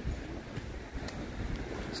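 Wind on the microphone: a low, uneven rumble.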